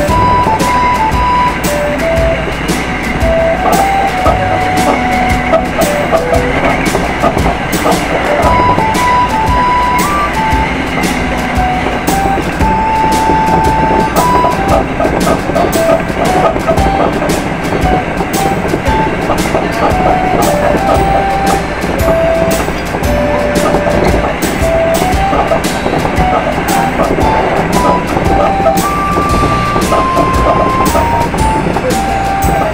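Hankyu 9300 series train running at speed: steady wheel-and-rail noise with repeated clicks of the wheels over the track. A simple melody of single notes plays over it as background music.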